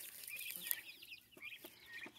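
Young chickens peeping and clucking faintly, with a few light clicks.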